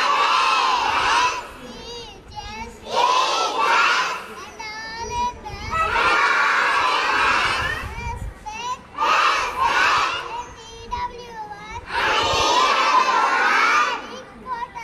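A large group of schoolchildren shouting out together in loud bursts of one to two seconds, five times, with quieter voices in the gaps between.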